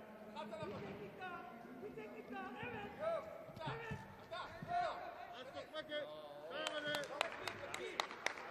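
A man's voice talking throughout. From about two-thirds of the way in, a run of sharp, irregular claps or slaps starts up and keeps going.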